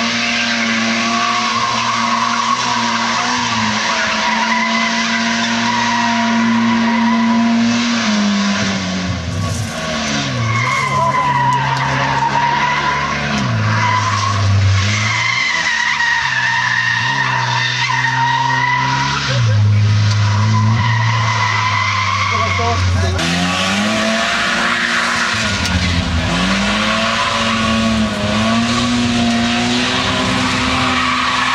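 A rally car's engine driven hard through a slalom, its pitch repeatedly dropping and climbing again as the driver lifts, brakes and accelerates between gates. Its tyres squeal on the asphalt through the turns.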